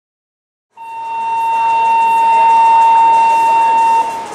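A single steady high-pitched tone that starts from silence about three-quarters of a second in, swells over about a second, holds at one pitch, and stops abruptly at the end.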